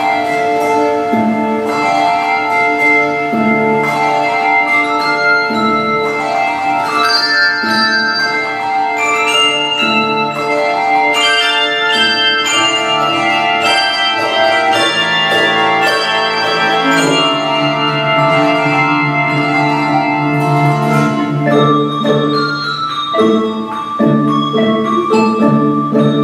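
Handbell choir playing in many parts: bells of many pitches ring and sustain over one another, with a repeating figure in the low bells beneath the melody.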